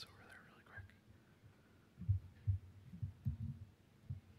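A man's voice murmuring faintly and indistinctly under his breath in a short pause, with a few low, muffled pulses in the second half.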